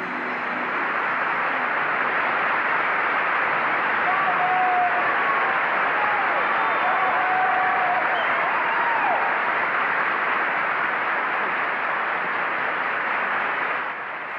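Large audience giving a standing ovation: sustained applause that swells over the first second or two and then holds steady, with a few voices calling out in the middle.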